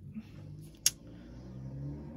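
Trading cards being handled and slid against each other, with one sharp click about a second in.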